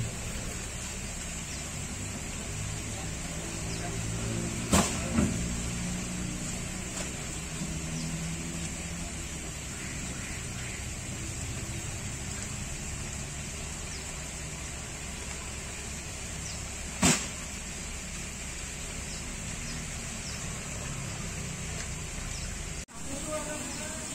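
Steady low background hum with a constant hiss, broken by short sharp knocks about five seconds in and again near seventeen seconds.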